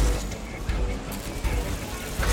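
Film soundtrack mix: dramatic score music over busy city street noise, with a low traffic rumble and crowd murmur.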